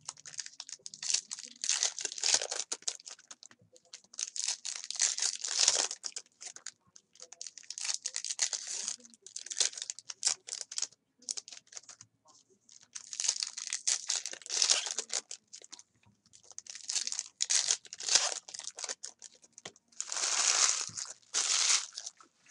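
Foil wrappers of Bowman Chrome baseball card packs being torn open and crinkled by hand. The crackling comes in repeated bursts a second or two long, with short pauses between.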